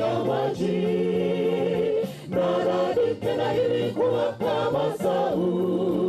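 A small mixed group of young singers singing a song in harmony into a handheld microphone, holding long notes with short breaks between phrases.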